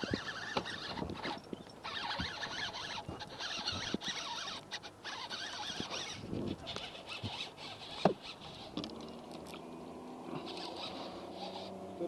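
Fishing reel's drag buzzing in repeated spurts as a hooked muskie pulls out line, for about the first six seconds and again near the end. A low steady hum joins about nine seconds in.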